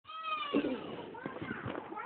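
A short animal call, pitched and falling slightly, in the first half-second, followed by a person's voice.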